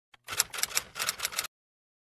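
Typewriter sound effect: a rapid run of key clacks lasting about a second, cutting off suddenly.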